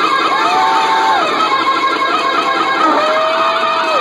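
Live noise-rock from a solo drummer: a drum kit played hard with a constant wash of cymbals, under loud distorted held tones that last about a second each and slide in pitch at their ends.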